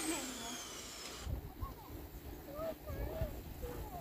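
Quiet riverside ambience: low wind rumble on the microphone in gusts, with faint distant voices.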